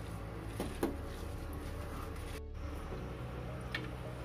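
A hand mixing a wet batter of ground dal, grated beetroot and onion in a bowl, with a few soft clicks, over a steady low hum and faint music. The sound drops out for a moment midway.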